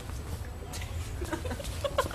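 A person clucking like a chicken: a quick run of short clucks in the second half, over a low steady hum.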